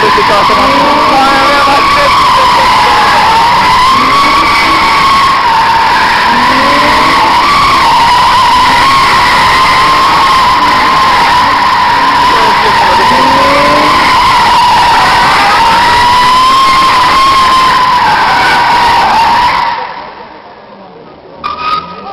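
Car tyres squealing continuously as the cars drift, a loud high screech that wavers in pitch, with engines revving repeatedly underneath. The squeal breaks off abruptly about twenty seconds in.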